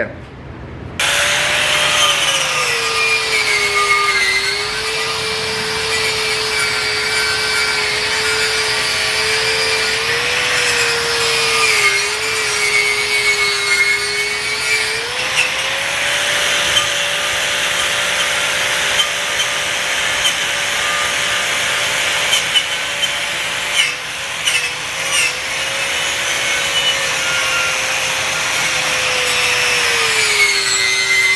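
Angle grinder fitted with a wire wheel, brushing slag and spatter off flux-core weld beads on steel plate. It starts up about a second in and then runs steadily with a high rasping brush noise over the motor's whine. The whine drops in pitch a few seconds in and climbs back about halfway through.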